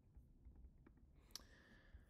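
Near silence with a few faint computer mouse clicks, the sharpest about a second and a half in.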